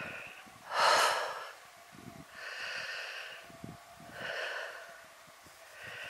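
A person breathing close to the microphone: slow, steady breaths in and out, about one every second and a half, the breath about a second in the loudest.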